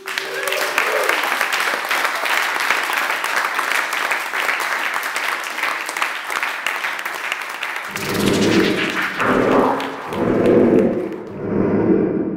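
An audience applauding: dense, steady clapping that thins out after about eight seconds. Over its tail come four loud, low shouts from the crowd, each about a second long.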